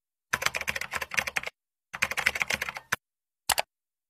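Computer keyboard typing sound effect: two quick runs of keystrokes, each about a second long, then a single short click near the end.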